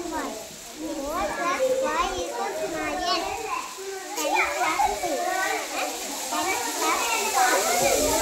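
Young children's voices talking and chattering, high-pitched and steady throughout.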